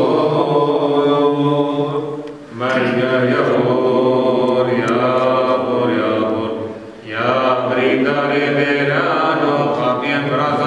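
A man's voice chanting a religious hymn in long, held notes with slow pitch slides, pausing briefly for breath twice, about two and a half and seven seconds in.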